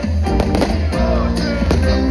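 Live band music played loud through a concert sound system, with heavy bass and a steady beat.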